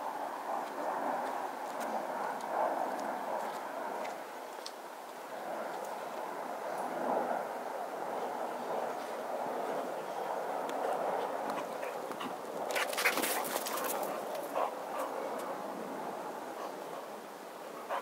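A dog whimpering and panting, with a short burst of crackling or scuffing about thirteen seconds in.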